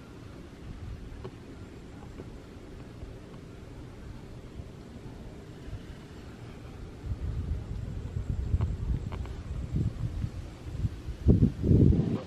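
Wind buffeting the microphone outdoors: an uneven low rumble that grows louder about halfway through and peaks in strong gusts near the end.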